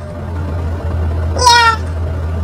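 A short, high-pitched, meow-like call with a falling pitch about one and a half seconds in, over a steady low hum.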